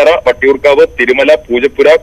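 Speech only: a news reader narrating in Malayalam.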